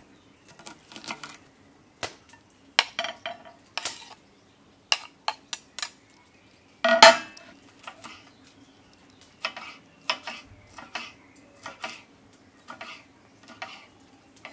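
Chef's knife chopping on a cutting board, an irregular series of sharp knocks as an onion is diced and then green chili peppers are sliced. The loudest knock comes about seven seconds in.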